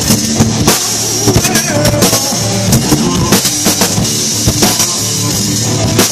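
Live rock band playing loud: electric guitar and bass over a steady drum-kit beat with bass drum.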